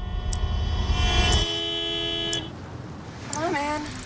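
Several car horns honking at once in heavy traffic, their tones overlapping and then cutting off about two and a half seconds in, over a deep rumble that stops abruptly partway through. A brief voice is heard near the end.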